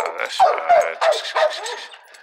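A young pit bull terrier giving a run of short, high whining yelps, about five in two seconds, each falling in pitch, as she bites and tugs at a hanging lure.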